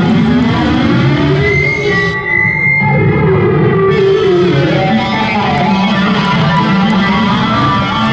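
Amplified electric guitar solo played live, with bending, wavering lead notes and one long high note held for about two seconds, starting about two seconds in.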